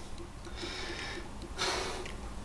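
A man breathing out audibly twice during a slow neck stretch, the second breath louder, near the end.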